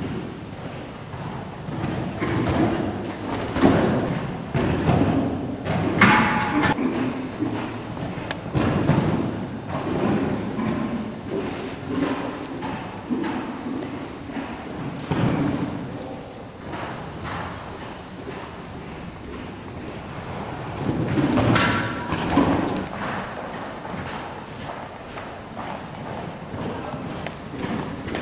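A horse's hooves thud on the soft sand footing of an indoor arena as it canters around a jumping course. The thuds come at an irregular pace, with louder ones now and then.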